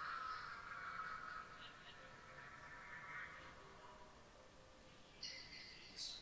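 Faint audio from the anime episode playing at low volume: a held tone that fades away over about three seconds, with a brief higher sound near the end.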